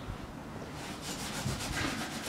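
Faint rustling and shuffling of a person moving, growing slightly louder about halfway through.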